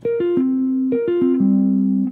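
A sampled software instrument played from a MIDI keyboard: clean single notes in a quick falling three-note figure, played twice, the second time ending on a lower held note.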